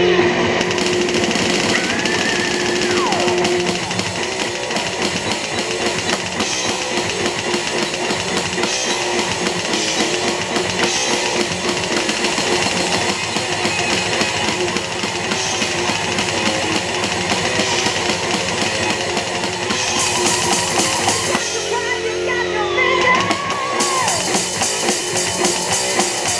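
A Tama drum kit played along to a thrash metal recording with distorted guitars: a steady rock beat with cymbals, continuous and loud throughout.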